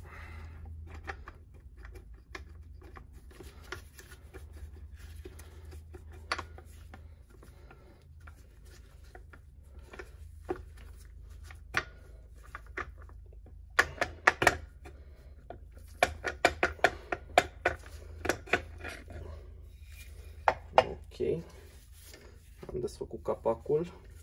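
Magnesium clutch cover of a two-stroke KTM SX 85 engine being worked loose and lifted off the crankcase by hand: scattered light metallic knocks and clicks, sparse at first, then coming in quick clusters in the second half.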